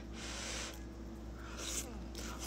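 Ramen noodles slurped off chopsticks: a long airy slurp in the first half-second or so, then a shorter slurp near the end.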